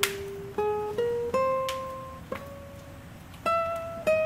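Solo guitar playing a slow melody of single plucked notes, each left to ring and fade, climbing step by step in pitch.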